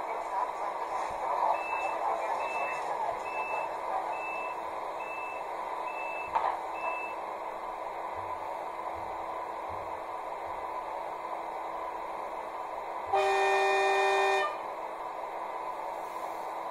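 ESU Loksound 5 sound decoder in a Märklin H0 ICE BR 401 model, through its twin speaker, playing the ICE's steady standstill running noise. Over it come a series of seven short high beeps, the door-closing warning, followed by a knock. About 13 seconds in, one loud, steady blast of the signal horn lasts about a second and a half.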